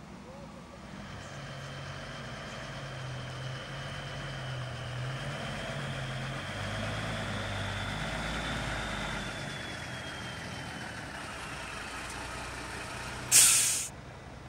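Heavy ERF lorry towing a fairground ride trailer drives slowly past, its diesel engine growing louder as it comes close, with a thin high whine gliding above it. Near the end, a lorry's air brakes let out one loud, short hiss.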